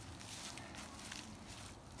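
Faint rustling and a few soft crackles of leafy compost material, water hyacinth and wood chips, being handled and moved on a pile.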